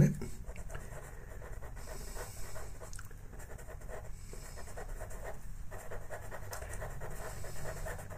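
Black Faber-Castell Pitt pastel pencil rubbing on pastel paper in many short strokes: a faint, irregular scratching.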